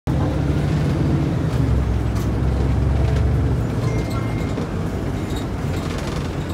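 City bus engine and road noise heard from inside the bus as it drives along a street: a steady low rumble, heavier for the first few seconds and then easing a little.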